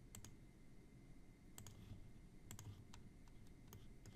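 A few faint clicks of a computer mouse, mostly in quick pairs, over near silence.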